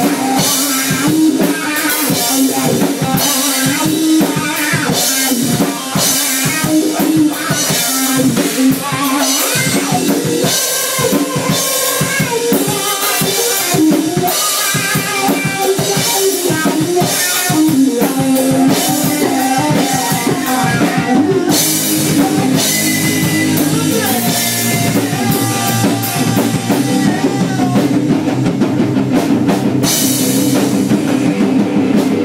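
Rock band playing live: distorted electric guitar over a drum kit, with no bass guitar in the mix.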